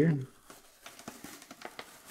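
Clear plastic blister packaging of a Hot Wheels 2-pack crinkling as its cardboard backing is peeled and torn away by hand: a run of faint crackles and clicks.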